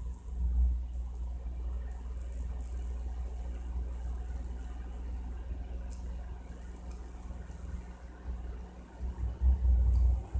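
A steady low hum with no speech, its faint pitched drone holding level throughout, with a few soft low bumps near the end.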